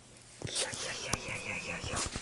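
A person whispering, starting about half a second in, with a sharp click a little over a second in.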